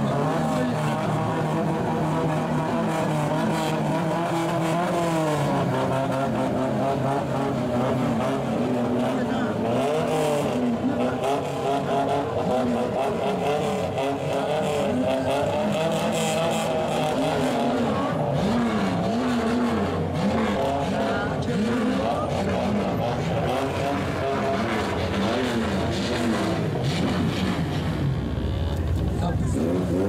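A car engine with a loud exhaust running and being revved up and down again and again, over crowd voices.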